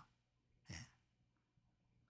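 Near silence, with one short, faint breath from a man pausing between sentences, about two-thirds of a second in.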